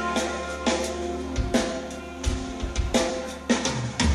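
Live rock band playing an instrumental stretch with no singing: drum kit with strong bass-drum and cymbal strikes about every three-quarters of a second, over sustained electric guitar and bass notes.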